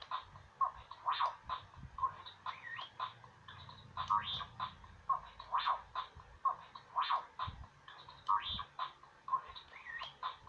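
Star Wars R2-D2 Bop It toy running its electronic game: a quick, evenly repeating loop of beeps, chirps and short rising-and-falling whistles.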